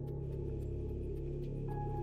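Ambient background music: a low, steady drone, with a higher held tone coming in near the end.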